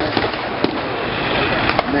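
Scattered sharp bangs from battlefield pyrotechnics and blank gunfire, about four at irregular intervals with two close together near the end, over steady background noise.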